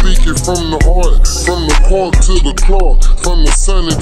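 Slowed-down, chopped-and-screwed Houston hip hop track: rapping over a heavy bass beat with sharp hi-hat ticks.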